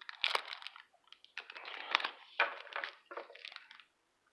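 Foil wrapper of an Upper Deck MVP hockey card pack crinkling in four or five short crackly bursts as hands grip and twist it, working at a stubborn pack that won't tear open easily.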